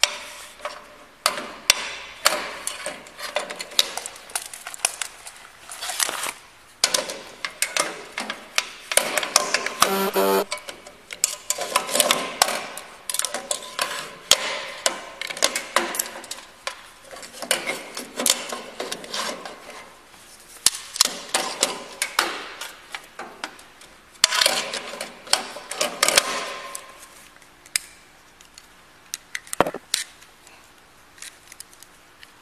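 Metal clicks, knocks and clatter from a stainless-steel lockbox drawer being opened and shut and a key being worked in its lock, over close clothing and hand rustle on a body-worn mic. There is a brief buzz about ten seconds in, and a faint steady hum near the end.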